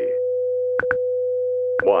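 WWV-style shortwave time-signal audio: a steady tone with short seconds ticks about once a second, including a doubled tick about a second in, over a faint low hum.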